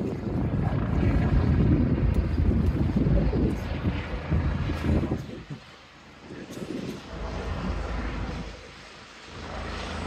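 Two rescue helicopters flying past overhead, their rotors and engines making a heavy low rumble. It is loud for the first half, then falls away twice, about halfway through and again near the end, with a swell in between.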